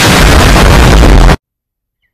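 A cannon shot, boosted and heavily distorted into a very loud, harsh burst of noise. It lasts about a second and a half and cuts off abruptly.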